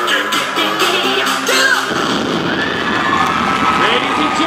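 Upbeat dance music with a driving beat stops abruptly about two seconds in, and the audience breaks into cheering.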